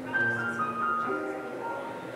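Solo piano playing slowly, a few high notes stepping downward over held lower notes.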